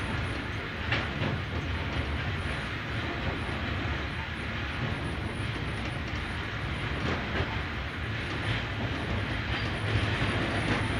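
Freight train wagons rolling along the track, heard from on board: a steady rumble of steel wheels on the rails, with a few clacks as the wheels cross rail joints.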